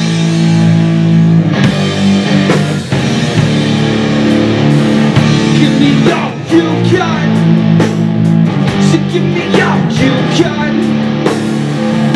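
Live rock band playing loud: electric guitars, electric bass and a drum kit.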